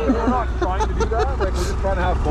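Men's voices talking indistinctly over a steady low rumble from idling snowmobile engines.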